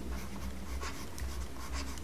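Stylus writing on a tablet screen: faint, irregular scratching pen strokes, over a low steady hum.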